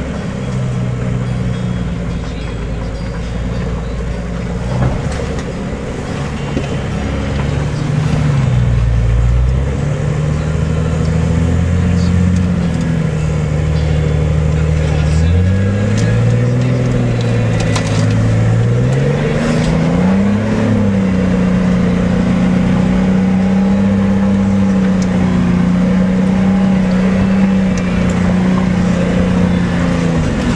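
Off-road 4x4's engine heard from inside the cab while driving a muddy track. The revs rise and fall several times, then hold steady at a higher pitch for the last third.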